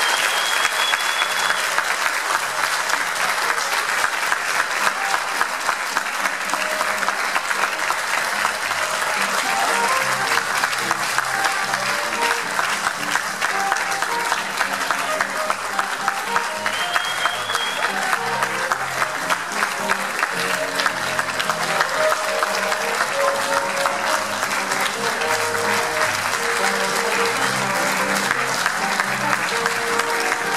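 A theatre audience applauding steadily, a dense clapping of many hands that goes on throughout, during the curtain call at the end of the play. A short high whistle rises briefly at the start and again about halfway through.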